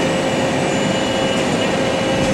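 DMG Gildemeister Twin 65 CNC lathe running, its radial driven tools spinning in the turret: a steady machine noise with a steady whine over it.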